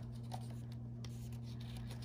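Fingers rubbing and scratching lightly on the edge of a paper book page as it is gripped to turn, over a steady low hum.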